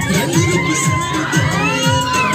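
A group of schoolgirls shouting and cheering over a song with a steady thumping beat.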